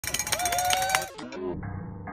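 Music: a held tone over sharp clicks for about the first second, then muffled music with a steady low hum.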